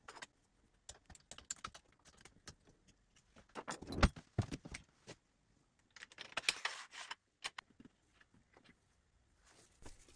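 Light clicks and rattles of metal and plastic jig parts being handled on an aluminium extrusion rail, scattered through, with two busier clusters about four seconds in and again around six to seven seconds in.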